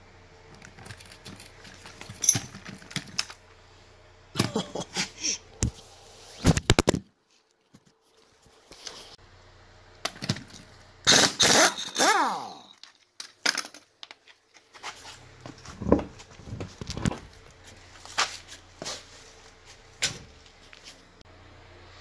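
Impact wrench run in short bursts on a wheel's lug nuts, with metallic clinks and rattles of nuts and socket in between. The loudest burst comes about halfway through and dies away with a falling pitch.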